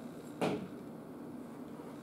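One short knock or thump about half a second in, over the steady hum of the room.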